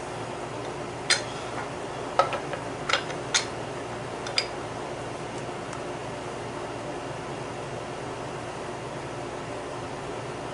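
A few light, sharp metallic clicks in the first half as the metal parts of a pen kit (the cap and clip) are handled and set into a toggle-clamp pen press, then only a steady room hum.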